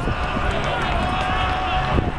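One long drawn-out shout from a voice on or beside a football pitch, held steady for over a second, over low outdoor rumble and the odd thud of play.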